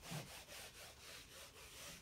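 Felt whiteboard eraser wiping across a whiteboard, a faint dry rubbing.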